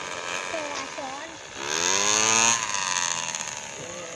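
Paramotor's small engine running, revving up about one and a half seconds in, holding for about a second, then easing back as the pilot throttles during the landing approach.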